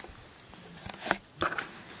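Handling noise from a hand-held camera being moved: a sharp click about a second in, then a short rustle.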